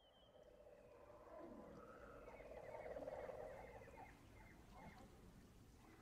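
Near silence, with a faint ambient swell that rises to a peak about halfway through and fades away again.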